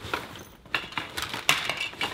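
Hands rummaging through a bag of small hard computer parts: a run of clinks and rattles, the sharpest about three-quarters of the way through.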